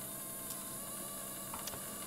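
Faint steady hum and hiss, with two faint ticks, one about half a second in and one near the end.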